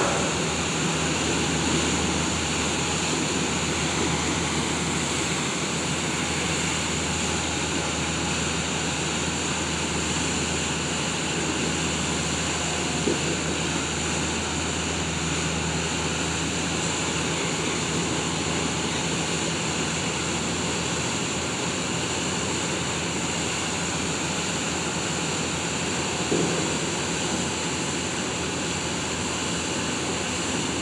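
The car ferry M/V Kitsap under way out of its slip: a steady low engine hum and rumble over the rushing churn of its propeller wash. A brief knock about halfway through and another near the end.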